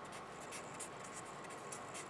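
Felt-tip marker writing on paper: a faint run of short pen strokes as the letters are drawn.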